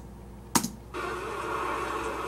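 A single sharp click about half a second in, then the music video's soundtrack starts playing back about a second in as a steady, even wash of sound.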